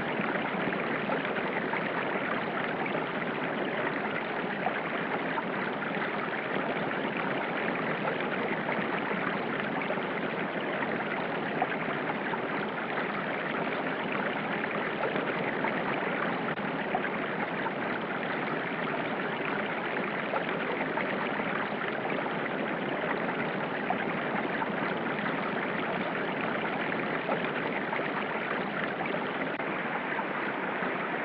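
River water rushing over rapids, a steady even rush with no pauses.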